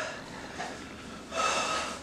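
A person's short, noisy breath, a snort or gasp through the nose or mouth, about a second and a half in, after a quiet stretch of room tone.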